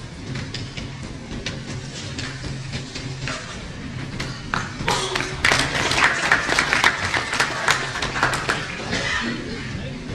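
Audience applause: scattered claps at first, swelling into a dense round about five seconds in and dying away shortly before the end.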